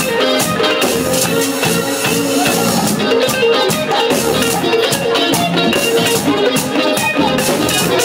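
Live bachata band playing: electric guitars, bass and drum kit with light shaken percussion, in a steady dance rhythm.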